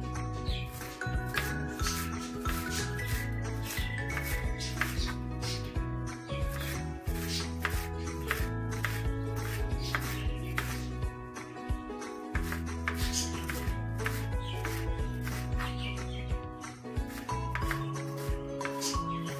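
Kitchen knife chopping fresh dill finely on a cutting board, a steady run of quick strokes several times a second, over background music.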